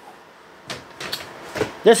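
A few short knocks and rustles of a packaged product being pulled out and handled, starting a little under a second in.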